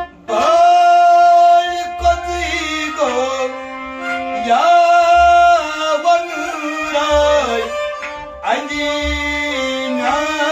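A Kashmiri Sufi song played on harmonium and a bowed sarangi, with a man's singing voice holding long notes that slide from one pitch to the next. Low drum strokes fall every two to three seconds.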